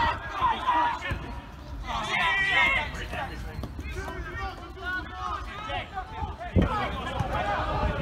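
Voices shouting and calling across a football pitch. About six and a half seconds in comes one loud thud of a football being kicked.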